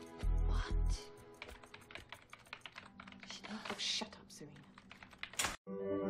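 Rapid typing on a computer keyboard, many quick keystrokes, over soft background music. About five and a half seconds in, everything cuts off abruptly and a gentle ambient music begins.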